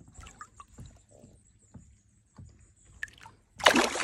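Small water sloshes and trickles as a smallmouth bass is held in the water beside the boat to revive it, then a short, loud splash near the end as the fish kicks free and swims off.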